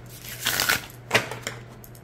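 A deck of matte-cardstock oracle cards being riffle-shuffled: a brief rush of cards flicking together about half a second in, then a sharp snap just after a second as the deck comes together, riffling cleanly without sticking.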